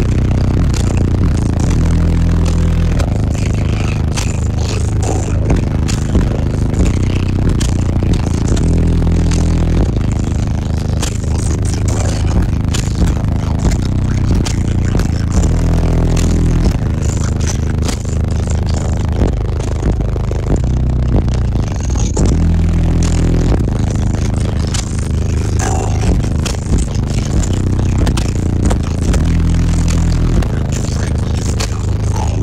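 Bass-heavy music played very loud through a car audio system of six 18-inch subwoofers, held deep bass notes stepping from one to the next every second or two. The bass shakes the vehicle, so trim and panels rattle and scrape throughout.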